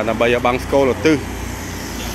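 Low rumble of road traffic passing on the street, plainest in the second half once the talking stops.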